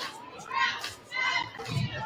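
Overlapping voices of spectators chatting in a school gym, with young, higher-pitched voices standing out; no single voice carries words.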